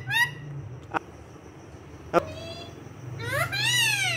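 Rose-ringed parakeet mimicking a cat's meow: a meow right at the start, a short note with a click a little past two seconds in, and a longer rising-then-falling meow near the end.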